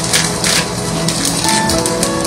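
Clear polypropylene plastic bag crinkling in irregular crackles as it is handled and its corners are folded inward, over steady background music.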